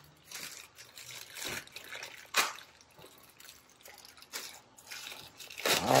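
Intermittent rustling and light clicks of a new ignition coil being handled and unwrapped from its packaging: about five brief, irregular swishes.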